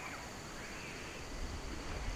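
Quiet outdoor bush ambience: a faint steady insect hum with soft rustling of movement, and a low rumble of handling near the end.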